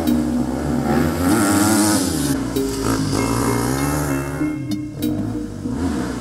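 Background music with a dirt bike's engine revving up and falling away over it, twice.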